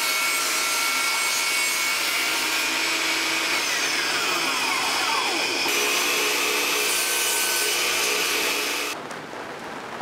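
Benchtop table saw running and cutting a thin strip of wood to size, a steady loud whine of blade and motor. It cuts off abruptly near the end, leaving quieter room noise.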